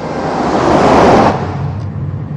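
A car passing by on the road at night: a rushing swell of tyre and engine noise that builds, peaks about a second in and cuts off abruptly, leaving a low steady engine rumble.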